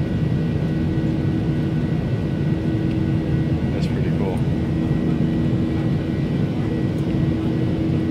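Steady jet airliner cabin noise heard from inside the cabin: the constant rush of engines and air, with a steady hum running through it.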